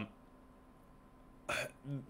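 Near silence with faint room tone for about a second and a half, then a man's short, sharp intake of breath as he gathers himself to speak.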